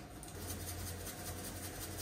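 Faint, steady low hum from an induction hob heating a pot of water, starting a moment in, with light handling sounds.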